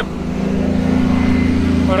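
Engine of a small utility vehicle running as it drives close by, a steady low hum that swells a little louder about half a second in.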